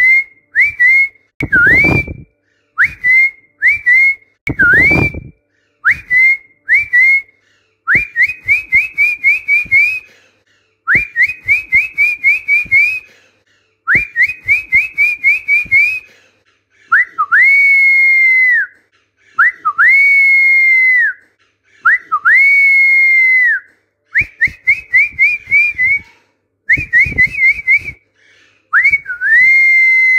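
A person whistling a repeated drill of short phrases for parrots to copy. First come quick runs of two to six short chirps that each flick upward. From a little past halfway the phrases become longer held whistles, each swooping up at the start and dropping off at the end.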